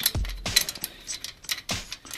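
Light metallic clicks and clinks as a steel spoke and its nipple are worked by hand into the hole of an aluminium BMX rim, a handful of sharp, uneven ticks.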